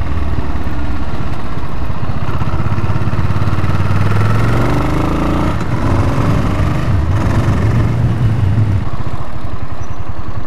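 Suzuki S40 Boulevard's 650 cc single-cylinder engine running under way, heard from the rider's seat. Its pitch rises about four seconds in, briefly breaks off around the middle, and eases lower near the end.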